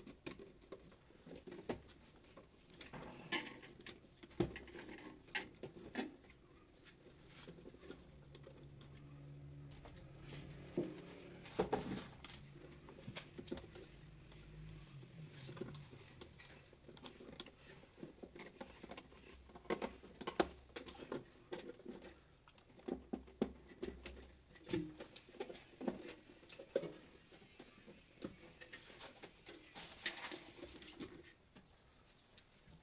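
Faint handling sounds from wiring an electrical control panel: scattered small clicks, taps and scratches as wires are worked into the trunking and terminal screws on the relays and contactors are turned with a screwdriver.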